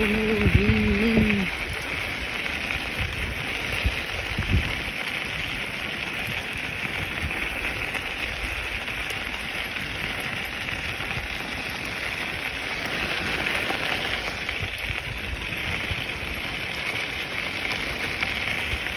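Mountainboard wheels rolling over a gravel path, a steady crunching hiss that runs on without a break, with a few low thumps about four seconds in.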